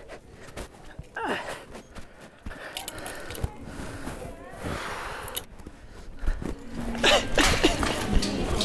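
A man's breathy gasps and strained grunts, loudest near the end, with rustling and clicking of clothes and hangers being pulled on a store rack.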